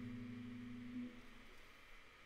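A lute chord rings on and fades away, its low notes dying out about a second in and leaving near silence.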